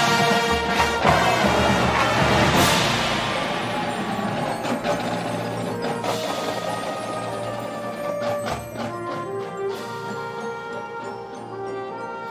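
Drum and bugle corps playing live: brass chords over battery and front-ensemble percussion, with a cymbal crash about two and a half seconds in. The music then grows gradually softer into sustained chords.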